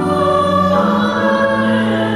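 A hymn sung by several voices with keyboard accompaniment, in long held chords that change to new notes about halfway through.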